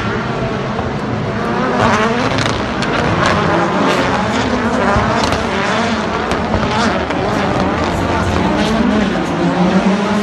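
Rallycross Supercars' turbocharged four-cylinder engines revving up and down as they race round the track, with frequent sharp cracks among them.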